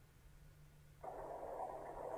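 Audio from the animated fish in a 3D augmented-reality coloring app, played through a smartphone speaker, starting suddenly about a second in and then holding steady. Before it there is only a faint low hum.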